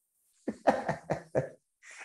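A man laughing in a quick run of about five short bursts, then drawing a breath.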